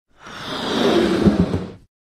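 A whoosh sound effect that swells for about a second and then fades out, with two low hits near its loudest point.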